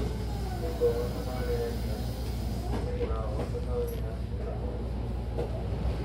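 Hankyu commuter train running, heard inside the car: a steady low rumble of wheels on the rails with a faint hiss.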